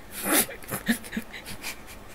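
A man's breathy laughter: one loud gasping burst just after the start, then a string of short breathy pulses.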